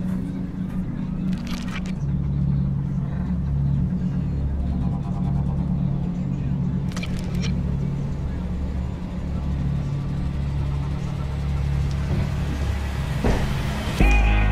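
Cabin sound of a car being driven: a steady low engine and road hum, with a few brief knocks.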